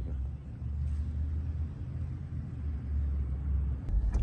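A low, steady rumble with no voices over it, ending in a single sharp click near the end.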